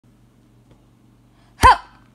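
A faint steady low hum, then about one and a half seconds in a single short voiced sound from a person, one brief syllable that rises and falls in pitch.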